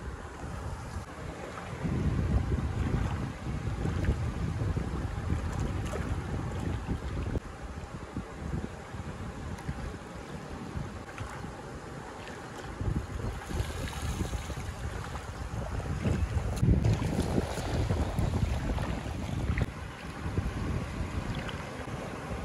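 Wind buffeting the microphone in gusts, strongest from about two to seven seconds in and again from about fifteen to twenty seconds, over the wash of small waves in shallow sea water.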